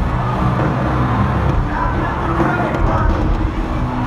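Loud live band music over an arena PA, recorded distorted, with a heavy steady bass and a voice over it.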